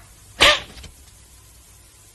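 A single sharp slap to the face about half a second in, with a short cry mixed into it, then quiet room tone.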